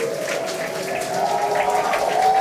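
A crowd cheering and applauding, with voices holding long whoops over the clapping.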